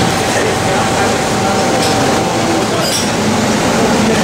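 Busy commercial kitchen: a loud, steady rush of machinery noise with people talking over it. A steady high tone runs for the first two and a half seconds, then stops.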